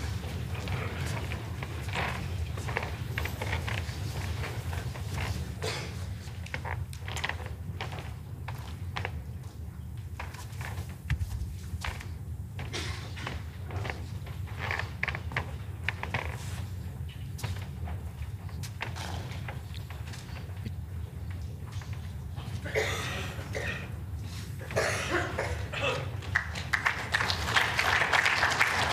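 Indoor sports hall ambience: a steady low hum with scattered small knocks and shuffling footsteps. Murmured voices rise in the last few seconds.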